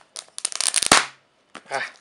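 Thin plastic shrink-wrap crinkling and crackling as fingers peel it off a cardboard box: a dense run of crackles for about a second that then stops.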